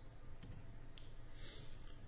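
Two light clicks about half a second apart, from a laptop key pressed to advance a presentation slide, over faint room tone.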